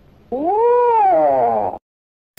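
A single drawn-out meow-like call that rises and then falls in pitch, lasting about a second and a half, then cuts off abruptly.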